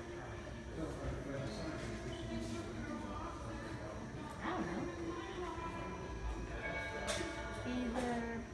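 Indistinct voices with music in the background.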